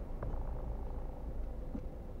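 Car engine idling while stopped, heard from inside the cabin as a low, steady hum.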